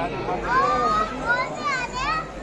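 Crowd chatter from a packed group of young people, with two loud, high-pitched voices calling out over it, their pitch sliding up and down, one starting about a quarter of the way in and one near the end.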